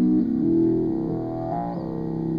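Live electronic improvisation on small synthesizers, a Korg Monotribe and a Kaossilator touchpad synth. Buzzy, distorted sustained notes step from pitch to pitch about every half second over a low pulsing bass.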